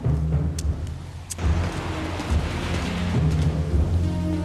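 Film soundtrack: a steady low car rumble under tense background music, with two sharp clicks in the first second and a half and a thickening hiss of traffic after that.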